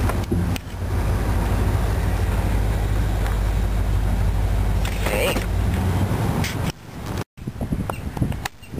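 A car driving slowly: a steady low rumble of engine and road noise heard from inside the cabin. It cuts off suddenly about seven seconds in.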